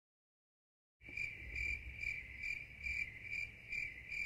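Crickets chirping as an edited-in sound effect for an awkward silence: after a second of dead silence, a steady high chirp starts and repeats a little more than twice a second.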